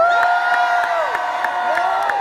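A crowd of convention delegates cheering, with several long held whoops and shouts overlapping and hands clapping at about four claps a second.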